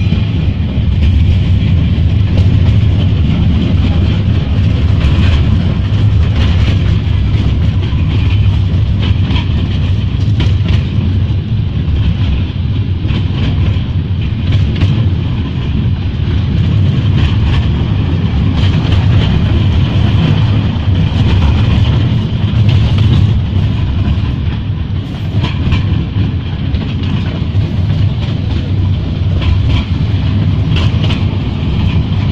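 Small open-sided tourist train rolling along, heard from inside the carriage: a steady low rumble with scattered clicks and knocks from the wheels and carriage.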